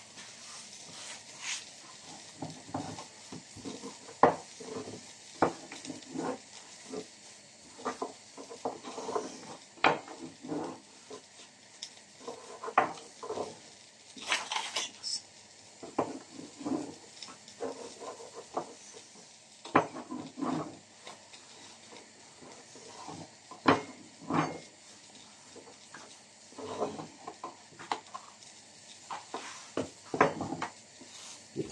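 A long, thin wooden rolling pin working a sheet of dough on a tabletop: irregular knocks and thuds as the pin is rolled, lifted and set down, with soft rubbing between them.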